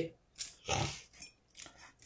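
A person clearing the throat once, quietly, with faint clicks of small decorations being handled around it.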